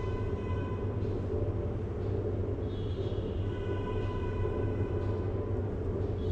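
Steady low hum and rumble of wall-mounted split air conditioners running, with faint high steady tones over it.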